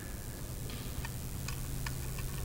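A few faint, irregular clicks over a steady low electrical hum picked up by a handheld microphone.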